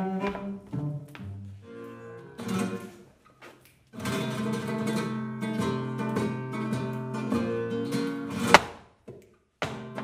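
Cello notes dying away, then after a short break a flamenco guitar playing, with one sharp, loud knock near the end followed by a moment of silence before the guitar comes back.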